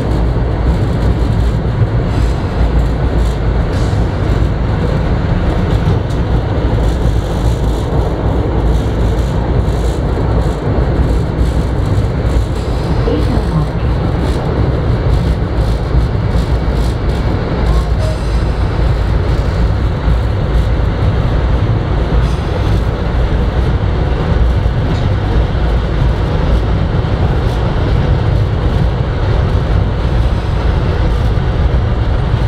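Subway train in motion, heard from inside the front car: a steady, loud rumble of wheels on rails that holds level throughout as the train runs from the tunnel into a station.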